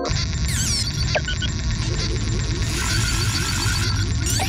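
Cartoon sound effects of a crowd of toy robots: electronic beeps, chirps and whistling pitch sweeps over a low rumble and a fast ticking, cutting in abruptly as the synth music stops.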